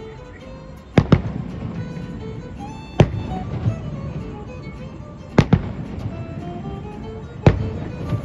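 Aerial firework shells bursting with sharp booms: a double boom about a second in, single booms at three and at seven and a half seconds, and another double near five and a half seconds. Music plays steadily underneath.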